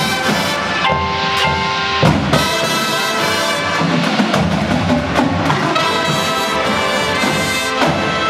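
Drum and bugle corps playing live: the brass horn line holds chords while the drums add accents, with sharp drum hits about two seconds in and again just before the end.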